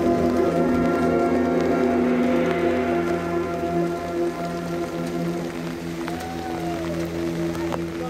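Marching band holding a long sustained chord, with mallet percussion from the front ensemble, softening after about four seconds. A brief sliding tone rises and falls near the end.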